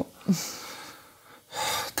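A man's breathing between sentences: a brief voiced sound at the start, a soft outward breath that fades, then a quick, sharp breath in about one and a half seconds in, just before he speaks again.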